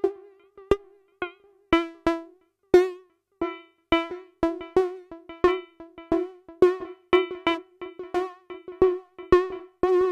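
Buchla modular synthesizer patch sounding short plucked synth notes, each opening with a click and dying away quickly, all near one pitch with wavering, buzzy overtones: a 281e quad function generator retriggering itself in a loop to open the 292e low-pass gate channels one after another, scanning between oscillator inputs. The notes are sparse for the first few seconds, then come in an irregular run of about two or three a second.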